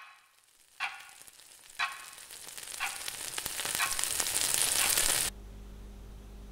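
Sound-design effects: a ringing, bell-like strike about once a second, each fainter than the last, under a crackling hiss that swells steadily. The hiss cuts off suddenly about five seconds in, leaving a steady low hum.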